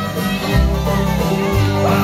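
Live bluegrass band playing an instrumental passage between sung lines: banjo, acoustic guitar, mandolin and fiddle over upright bass, the fiddle sliding between notes.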